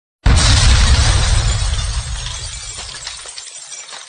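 Outro sound effect: a sudden loud crash with a deep boom about a quarter second in, fading over about three seconds into fine crackling, tinkling debris.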